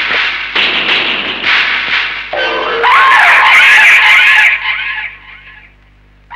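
Loud dramatic film background score, hit with a string of abrupt chord stabs, then a high wavering melody that dies away about five seconds in.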